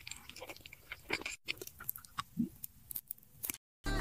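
Faint close-up eating sounds: sparse soft crunches and wet mouth clicks of lips and teeth biting and chewing a gummy jelly candy. The sound is broken by two brief dead-silent gaps.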